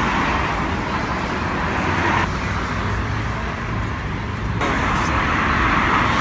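Steady street traffic noise from a road running alongside, an even wash of sound with no distinct events.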